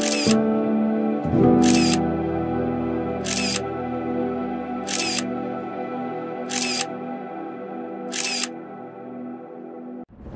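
Background music with a camera shutter sound clicking six times, about once every second and a half.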